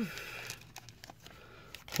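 Faint handling noise of a trading card and plastic card sleeve: soft rustling with a few light ticks.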